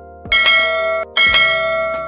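Two bright bell-like chimes, about a second apart, each ringing on and fading, over a music bed with a steady soft beat: a notification-bell sound effect for a subscribe-button animation.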